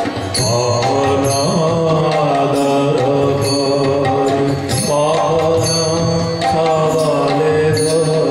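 Devotional kirtan: a male voice sings long, gliding melodic phrases over harmonium and violin, with a brief break in the line about halfway through. Short metallic strikes with a high ringing come in now and then.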